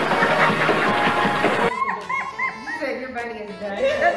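A short burst from an old gospel choir performance: a loud, dense mass of choir and band sound that cuts off sharply about two seconds in. A woman's voice with short chuckles follows.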